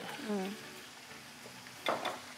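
Seafood frying in a pan with a faint sizzle as chopped hot green chili is tipped in, with a light knock near the end.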